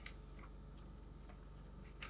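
Near silence: room tone with a steady low hum and a few very faint ticks.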